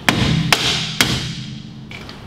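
Hammer blows on the front suspension of a 1984 VW Scirocco: three sharp strikes about half a second apart.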